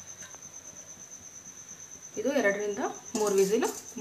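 A steady, high-pitched pulsing trill runs throughout, with a person starting to speak about two seconds in.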